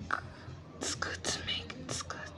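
A person whispering close to the microphone: a few short, breathy, hissing bursts with no voiced tone.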